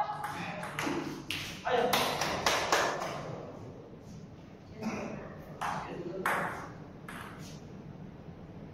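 Table tennis ball striking the paddles and the table in a rally: sharp clicks several times a second for the first three seconds, then a handful of single clicks spaced out.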